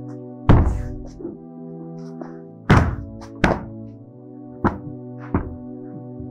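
Several irregular thuds of a cloth slapping against upholstered sofa cushions, the loudest about half a second in and again near three seconds, over a sustained background music pad.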